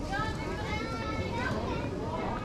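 Voices of people at an outdoor street market, several high-pitched voices overlapping above a steady low background rumble.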